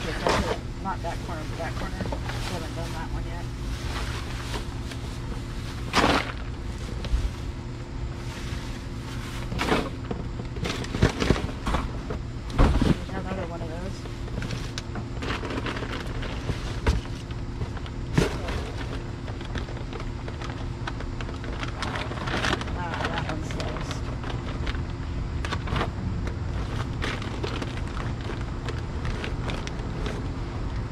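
Plastic trash bags rustling and crinkling as they are handled and shifted among cardboard boxes in a dumpster, with a few sharper knocks and thumps, the loudest about 6, 11, 13 and 18 seconds in. A steady low hum runs underneath.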